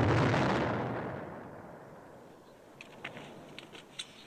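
Film sound effect of a shell explosion dying away: a loud rumble that fades over about two seconds, followed by a few faint clicks near the end.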